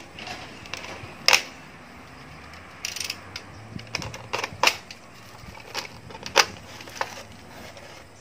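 Utility knife cutting into a thin plastic drink bottle: a scatter of sharp, irregular clicks and crackles from the plastic, the loudest about a second in and again a little after six seconds.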